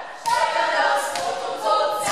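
A group of voices singing together without instruments, in short phrases with sharp attacks.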